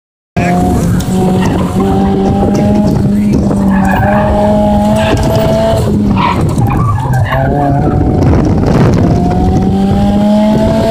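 Car engine revving hard at high rpm, pitch rising as it accelerates and dropping when the throttle eases, with tires squealing as the car is pushed through the corners. The sound starts about half a second in.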